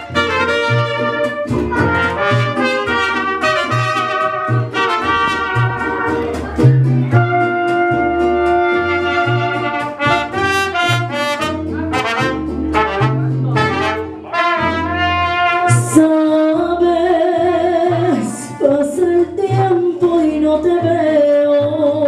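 Mariachi band playing the instrumental introduction of a song: trumpets carry the melody over strummed guitars and a pulsing bass line.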